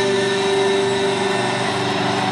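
Live rock band holding its final chord at the close of a song. Several instrument tones sustain as a steady drone, ringing out over the room.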